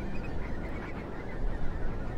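A large flock of whimbrel calling, many short whistled notes overlapping, over a low rumble.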